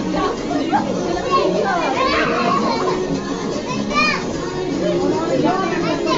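Children shouting and chattering over music, with high-pitched cries about two seconds in and again about four seconds in.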